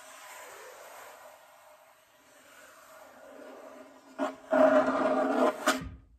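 Frame drum played by rubbing the hands across its skin: a soft rasping sweep with the drum's low ringing tone under it. About four seconds in comes a knock, then a second or so of much louder rubbing, ending in a sharp tap as the sound cuts off.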